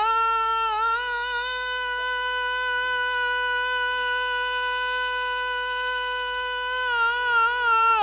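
One long, high note of Bengali baul folk song from a male singer with his bowed violin, held steady in pitch for several seconds, with wavering ornaments as it settles at the start and again near the end.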